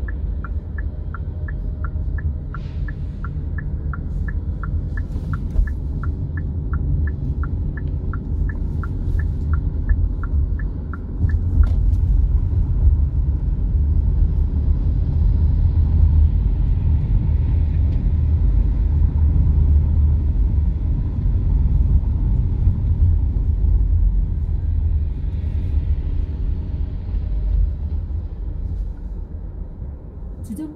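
Car running on a city street, heard from inside the cabin as a steady low road-and-engine rumble that grows louder as it picks up speed partway through. For the first eleven seconds or so a turn-signal relay ticks evenly, about three ticks a second, while the car makes a turn.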